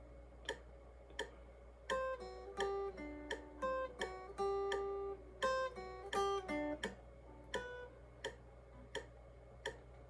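Hollow-body electric guitar playing a melodic lead line of picked single notes and short double-stops, each note ringing briefly, the notes coming more sparsely near the end. A steady low hum sits underneath.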